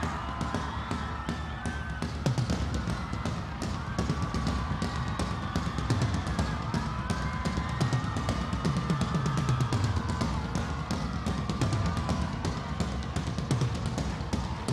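Live rock drum kit playing a fast, steady beat of bass drum, snare and cymbals, with sustained held notes over it, as the instrumental intro of a concert set.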